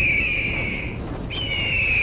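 A bird-of-prey cry sound effect, a long screech falling slightly in pitch, heard twice: one cry ends about a second in and the next begins soon after, over a low rumble.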